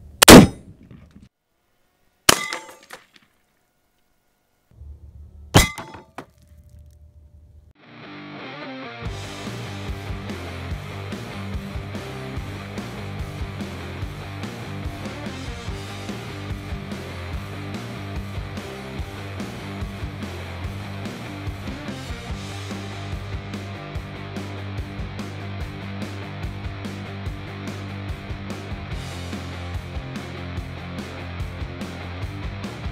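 A Mosin-Nagant rifle fires a 7.62x54R PZ exploding round: one very loud, sharp shot, then two quieter sharp bangs about two and five seconds in. From about eight seconds on there is rock-style background music with a steady beat.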